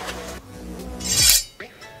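A short, bright metallic ringing 'shing' about a second in, like a sword drawn from its sheath, over background music.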